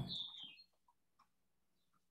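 The end of a man's spoken word fades out in the first half second, then near silence: room tone with a few faint ticks.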